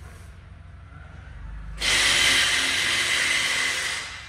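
A low hum, then about two seconds in a sudden loud, steady hiss of air that lasts about two seconds and drops away at the end.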